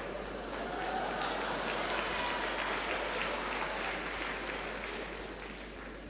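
Audience applauding in a large hall. The applause swells over the first couple of seconds, then slowly dies down.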